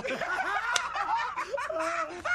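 Several men laughing together, snickering and chuckling over one another.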